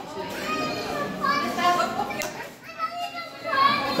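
Young children's high-pitched voices, babbling and calling out in short bursts, with some adult speech mixed in.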